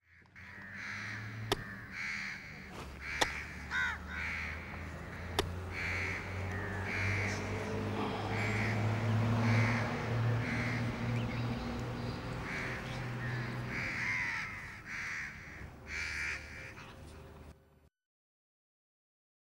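Crows cawing repeatedly, a call every second or so, over a steady low hum. Three sharp clicks stand out in the first six seconds.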